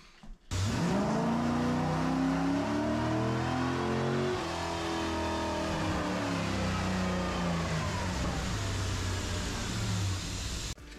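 Car engine at high revs, starting about half a second in; its pitch climbs over the first few seconds, then slowly falls away.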